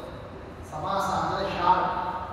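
A man speaking into a microphone in a lecture: a brief lull, then his speech resumes about two-thirds of a second in.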